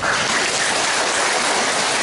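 A congregation applauding: dense, steady clapping.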